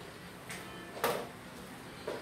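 Television sound: faint background music with two sharp clicks, a small one about half a second in and a louder one about a second in.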